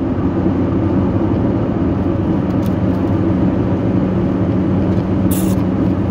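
A car driving, heard from inside the cab: a steady low engine hum over continuous road and tyre noise.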